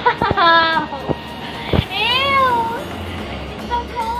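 A girl's high-pitched squeals, with a few knocks: a held squeal early on, then a second that rises and falls about two seconds in, and a short one near the end.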